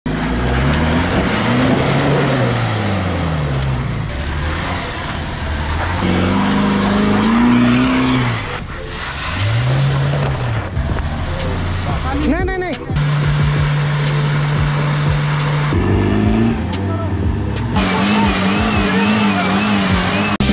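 Off-road 4x4 engines revving hard in a string of short clips, pitch rising and falling with each rev and changing abruptly from clip to clip. A few seconds past the middle, one engine holds steady high revs.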